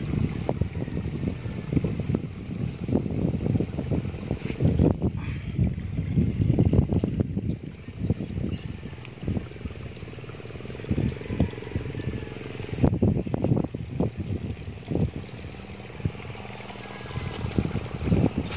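Wind buffeting the microphone: a low, irregular rumble that rises and falls in gusts.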